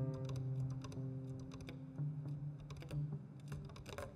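Quiet passage of clarinet and piano jazz: low notes held for a second or more each, with many short sharp clicks scattered through it.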